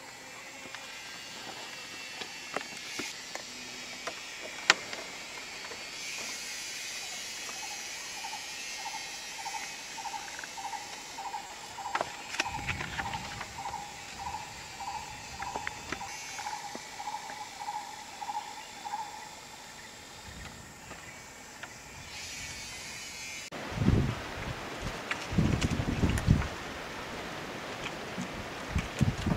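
Forest insects keeping up a steady high buzz, with an animal call repeated as short even notes about twice a second for roughly ten seconds in the middle. There are a few low bumps near the end.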